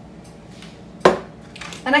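A spoon clinks once, sharply, against a dish about a second in.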